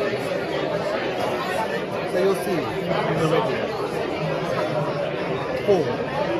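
Steady chatter of many voices talking at once in a crowded bar.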